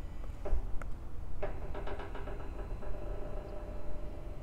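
Electric motor tilting the head of a WLP 700 nebulization cannon: a couple of clicks, then from about a second and a half in, a steady whine as the head changes inclination.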